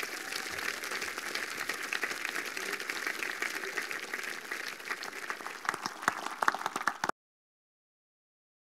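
Audience applauding in a hall, with a few louder single claps standing out near the end, cut off abruptly about seven seconds in.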